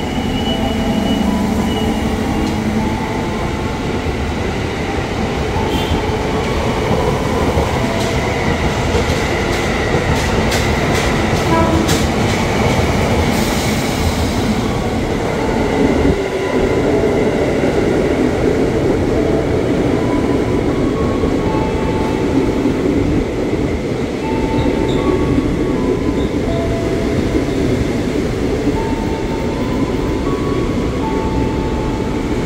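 Electric commuter trains running through a station, with a stainless-steel train rolling along the platform close by. Steady motor whines come and go at several pitches over the rumble, and a quick run of clicks from the wheels crossing rail joints comes about eight to twelve seconds in, followed by a short hiss.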